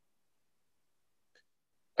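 Near silence: the call audio drops out to nothing, with one very faint brief blip past the halfway point, and a man's voice comes back at the very end.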